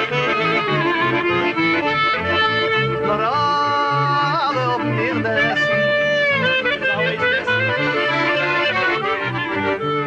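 Klezmer band playing, led by accordion with clarinet and a bowed cello bass line, under a sung first verse. A wavering lead melody slides up and down in pitch about three to five seconds in.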